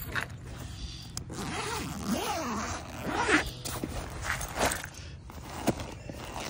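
Zipper of a first-aid go bag being pulled open in a few long strokes, with short clicks as the bag is handled.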